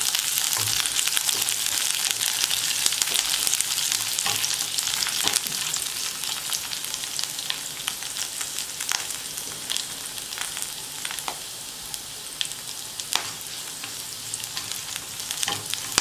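Chopped garlic, pandan and curry leaves sizzling in hot oil in a non-stick wok, with sharp crackles throughout and a spatula stirring them now and then. The sizzle is loudest over the first five seconds and dies down after that.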